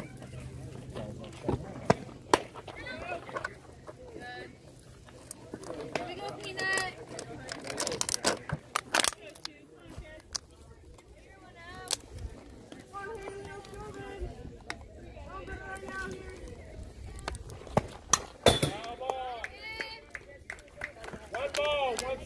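Outdoor youth softball game: scattered calls and chatter from players and onlookers, with some held, chant-like voices partway through. Several sharp smacks break through, the loudest about two seconds in, around eight seconds and near eighteen seconds.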